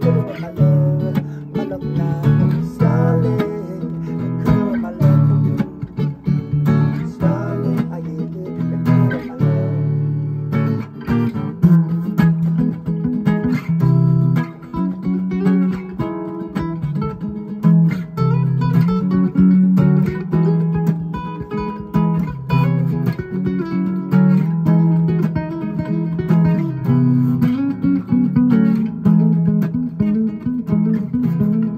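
Two acoustic guitars playing an instrumental passage together, with strummed chords and picked notes running steadily throughout.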